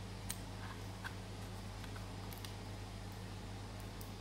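A few faint, scattered clicks of a fingernail picking at the blue protective plastic film on a VR headset's lens as it is peeled off, over a steady low hum.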